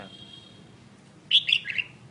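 A caged songbird gives a short burst of three or four quick, high chirps about a second and a half in.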